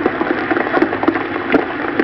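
Aftermath of a half-ton dynamite blast: a steady patter of falling sand and debris with a few sharp knocks, and voices calling out faintly.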